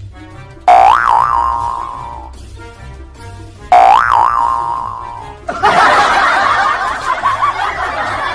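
Two cartoon 'boing' sound effects about three seconds apart, each a sudden springy twang that wobbles and fades, over light background music. From about five and a half seconds in, a loud, busy burst of laughter sound effect takes over.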